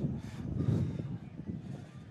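Low, uneven rumble of wind buffeting an outdoor microphone.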